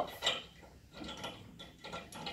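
Steel safety chain and U-bolt shackle clinking against a tow bar while the chain is fastened: a few light metallic clinks and rattles spread over the two seconds.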